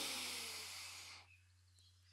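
A long, deep breath drawn in, the airy intake fading out about a second in, then near silence.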